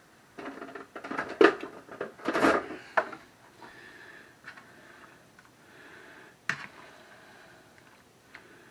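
A spatula clattering and knocking against a skillet, then stirring pizza sauce into browned ground meat with soft, wet scraping. The knocks and taps cluster in the first three seconds, with one more sharp tap later.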